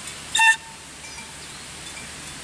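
A single short, shrill whistle blast about half a second in, with a faint tone trailing off briefly after it.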